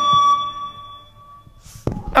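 Rock band's music thinning to one held high note that fades away to near quiet, with a single sharp click near the end.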